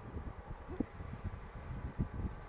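Wind buffeting the microphone on a moving Honda Gold Wing trike, in uneven gusts, over the faint steady running of its flat-six engine.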